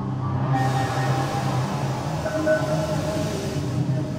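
Live ambient electronic music from synthesizers and electronics: a low droning tone under slow held higher notes, with a hissing noise wash that comes in suddenly about half a second in and fades out near the end.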